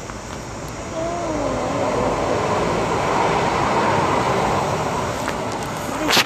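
A vehicle passing close by on the road: a broad traffic noise that swells over a few seconds and eases off near the end. About a second in there is a short falling tone.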